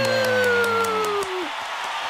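A woman's long, drawn-out high exclamation of delight, like a held "wow", slowly falling in pitch and trailing off about a second and a half in.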